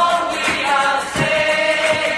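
Background music: a choir singing long held notes over a light beat.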